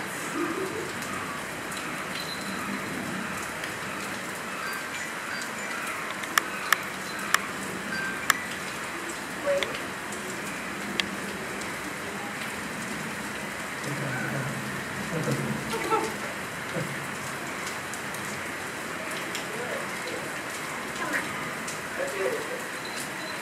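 Steady rain falling, an even hiss throughout, with a few sharp ticks between about six and eight seconds in.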